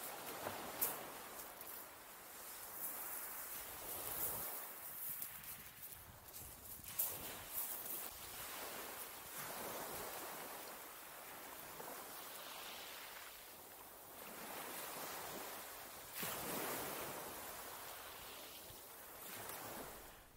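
Small waves washing onto a shingle beach, swelling and fading every few seconds.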